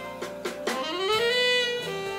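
Big band jazz with a saxophone line on top: a few short notes, then a note that scoops up about halfway through and is held.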